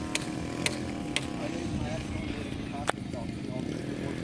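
Small gasoline two-stroke engine (DLE-35) of a radio-controlled scale model plane, droning steadily while the plane flies high overhead. Sharp clicks come about twice a second in the first second and a half, and once more near three seconds.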